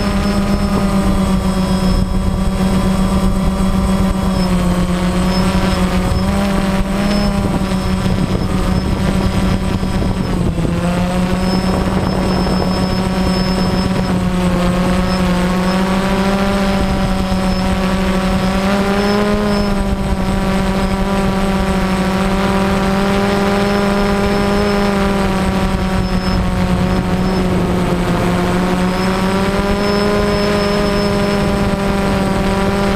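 DJI Phantom quadcopter's electric motors and propellers heard close up from its onboard camera: a loud, steady buzzing hum whose pitch drifts up and down a little as the drone holds and shifts position.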